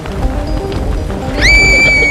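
Cartoon background music, joined in the second half by a high-pitched cry that rises in, holds one level pitch for most of a second and then falls away.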